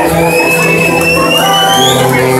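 A street brass band plays, with a snare drum and held brass and saxophone notes. Above the band a thin high tone slides slowly and steadily upward in pitch and breaks off near the end.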